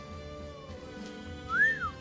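Background music with steady held notes; near the end, one short whistle that glides up and back down in pitch.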